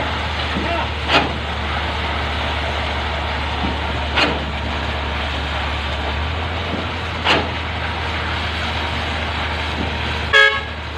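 A concrete pump truck's engine drones steadily while the pump delivers concrete through its hose, with a sharp knock about every three seconds as the pump cycles.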